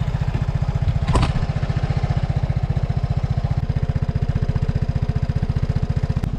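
Vespa Primavera scooter's single-cylinder engine idling just after start-up, a steady, rapid low pulsing, with a single sharp click about a second in.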